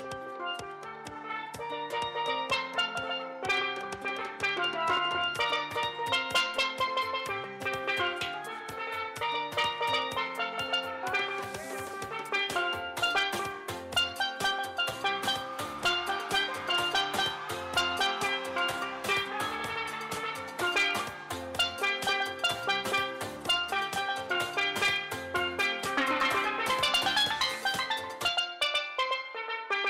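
A steelpan played solo, quick struck melodic notes ringing out over an accompaniment with bass and drums, building to a bright flurry of high notes near the end.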